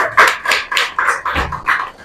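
Applause from a small audience thinning out into scattered, fading claps, with a low thump about one and a half seconds in.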